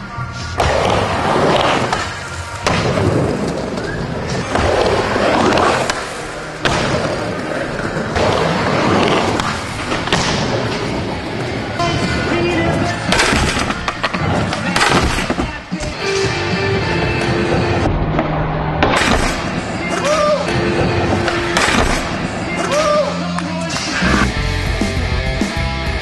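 Skateboards rolling and clacking on wooden skate ramps, with repeated sharp knocks from boards landing and hitting the ramps, under loud music.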